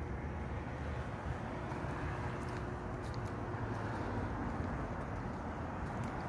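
Steady low background rumble of urban surroundings, with a faint steady hum through the first half and no distinct events.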